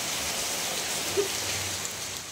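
Heavy rain falling steadily on trees and paving, an even hiss, with one brief sharp tap a little over a second in.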